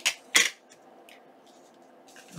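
Two sharp clacks about half a second apart, the second louder: a plastic ink pad being set down on a glass craft mat.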